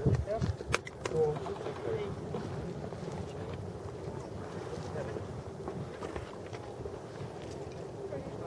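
Indistinct chatter of people talking in the background, over light wind on the microphone, with a sharp click about a second in.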